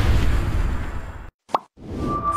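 Closing theme music of a TV sports programme fading out and dropping to silence, then a single short pitched blip, rising and falling, about one and a half seconds in.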